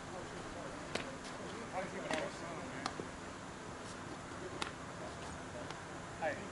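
Faint distant talking from players and spectators over a steady low hum, with several sharp clicks scattered through.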